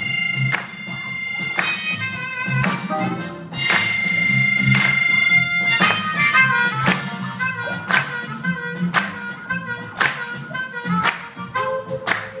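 Live blues band playing an instrumental passage. A blues harmonica carries long held notes over electric guitar, bass and a steady drum beat.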